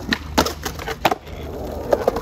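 Skateboard wheels rolling on concrete, with several sharp clacks of the board striking the ground as a flat-ground trick is popped and landed, the last ones near the end.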